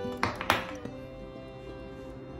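Two sharp taps about a quarter second apart as a pastry wheel and a fork are set down on a wooden table, over background music.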